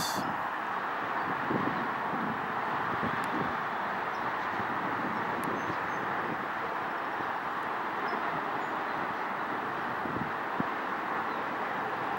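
Steady distant freeway traffic noise rising from the valley below, with light gusts of breeze on the microphone.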